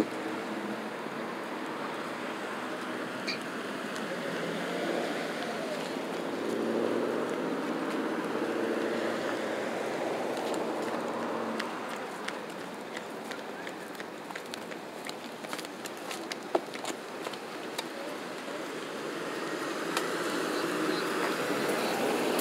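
Road traffic at a busy city intersection: cars driving past with tyre and engine noise, swelling for several seconds about a third of the way in, with faint distant voices and a few light clicks.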